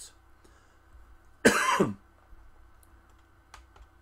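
A man coughs once, a short, loud cough falling in pitch about one and a half seconds in. A faint click follows near the end.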